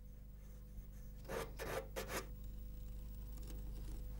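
Fine sandpaper rubbed by hand over the wooden body of a chicotén (salterio), four quick faint strokes in the middle, while the edges are smoothed before varnishing. A low steady hum runs underneath.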